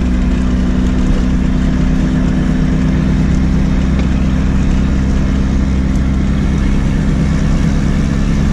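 Turbocharged VW Gol engine running at a steady cruise, heard from inside the cabin as an even, unchanging drone.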